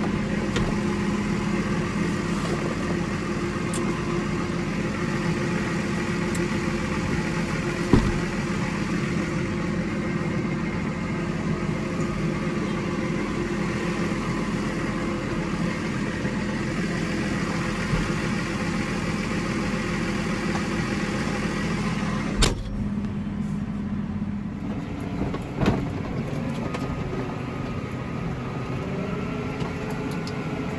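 Tractor engine running steadily, heard from inside the closed cab as a constant drone with a low hum. A few short knocks stand out, one about eight seconds in and two more a little past two-thirds of the way through.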